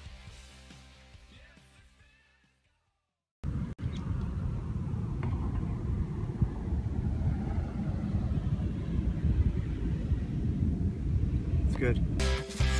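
Guitar rock music fading out over the first few seconds into a short silence. Then an unedited outdoor recording cuts in: a steady low rumble with noisy buffeting, and a voice says "good" at the very end.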